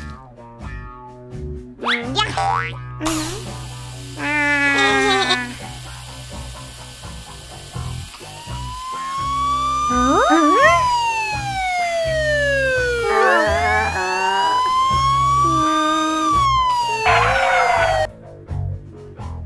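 Cartoon background music with short sound effects. From about eight seconds in, a police siren sound effect wails slowly up and down twice and cuts off near the end.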